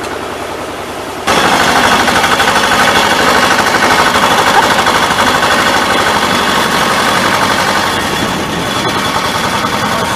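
Tractor engine idling, then about a second in a sudden jump to much louder running with a rapid, even firing rhythm as the tractor is driven along a terrace row behind a disc turning plow.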